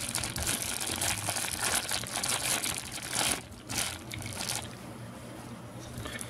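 Plastic wrapping crinkling and rustling as a charger and its cord are unwrapped by hand. It is dense for the first three seconds or so, then comes in a few short bursts and dies down after about four and a half seconds.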